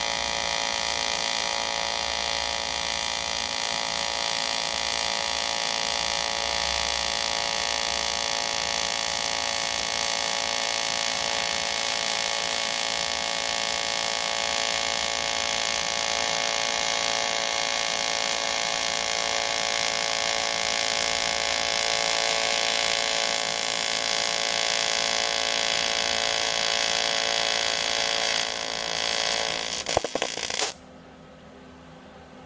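AC TIG welding arc from an Everlast PowerTig 250EX on aluminium: a steady, unbroken buzz made of many even tones, wavering briefly near the end.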